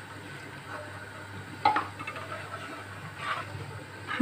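Metal spoon stirring rice, milk and broth in an aluminium pan, mostly soft, with one sharp clink of the spoon against the pan about one and a half seconds in and a lighter one near three seconds.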